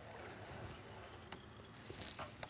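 Faint open-water quiet, with a short high hiss near the end as a cast goes out: fishing line whirring off a casting reel's spool.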